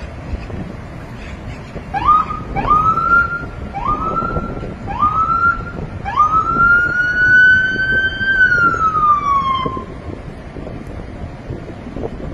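Police siren giving four short rising whoops, then one long wail that climbs, holds and slides back down, stopping about ten seconds in. It is loud.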